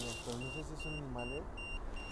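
Short, high electronic beeps repeating about four times a second, a steady beeping under faint voices.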